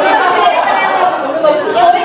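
Many voices talking over one another: crowd chatter in a large room, with no single voice standing out.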